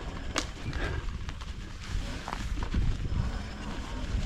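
A homemade e-bike being ridden over a bumpy, overgrown woodland track: a steady low rumble with scattered sharp knocks and rattles as it hits bumps, the loudest about half a second in.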